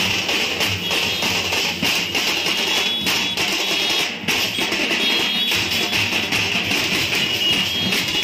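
A procession band plays live: drums are beaten in a fast, dense rhythm, with bright metallic ringing on top.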